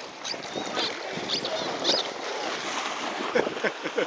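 Shallow sea water splashing and sloshing irregularly around legs wading through it.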